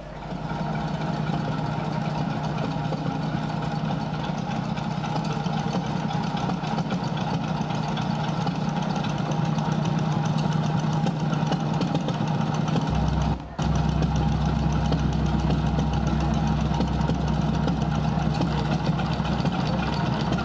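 A steady, engine-like drone that starts suddenly and runs on evenly, with a brief dropout about thirteen seconds in.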